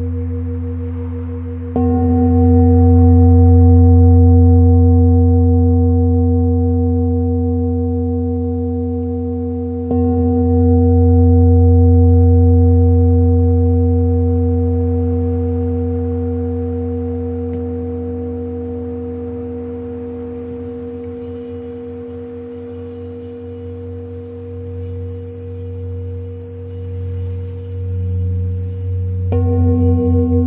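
Tibetan singing bowls struck with a mallet about two seconds and ten seconds in. Each strike rings long and slowly fades with a deep hum and higher overtones. The ringing wavers near the end, and the bowls are struck again just before it closes. Bell crickets sing steadily and high throughout, turning into pulsing chirps in the second half.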